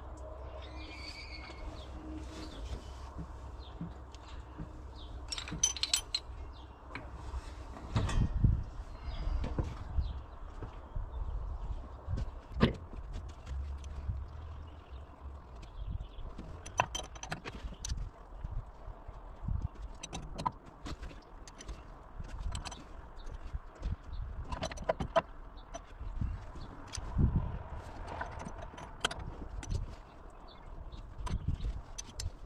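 Scattered metallic clinks and knocks at irregular intervals as rocker arms and pushrods are unbolted and lifted off the cylinder head of a Dodge 318 V8, over a low steady rumble.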